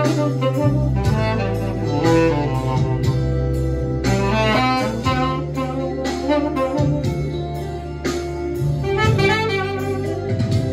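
Tenor saxophone playing a jazz melody with a quick rising run about four seconds in, over a backing track with sustained low bass notes.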